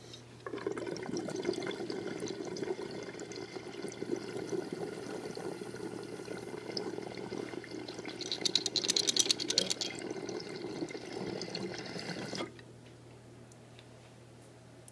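Water bubbling and churning through a glass recycler dab rig as a hit is drawn through it. It starts about half a second in and stops suddenly near the end, with a louder, faster stretch of bubbling about two thirds of the way through.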